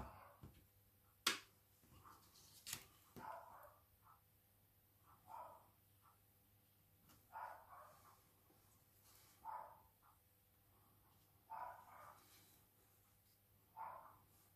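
Near silence, with a faint short call repeating about every two seconds and two sharp clicks in the first three seconds.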